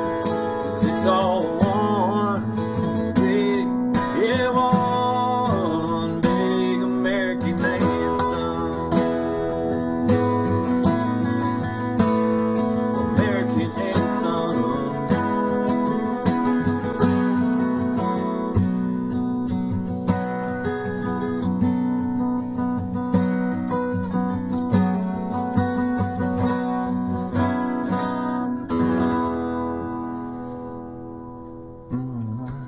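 Two acoustic guitars playing an instrumental passage of a country song, strummed chords under picked melody lines with bent notes. The music starts to fade at the very end as the song closes.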